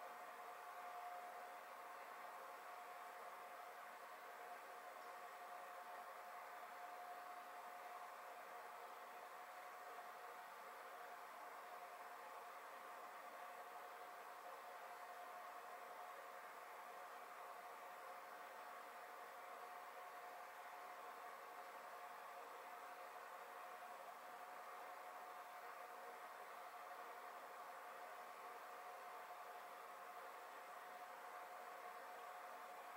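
Near silence: steady room tone, a faint even hiss with a thin steady tone running through it.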